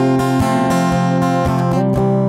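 Acoustic guitar strumming chords in a steady rhythm.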